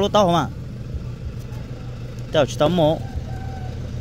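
A vehicle engine idling, a steady low hum, under two short bursts of a woman's speech near the start and in the middle.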